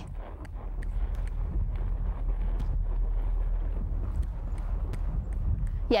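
A horse trotting on a sand arena, its hooves giving faint, soft thuds over a steady low rumble.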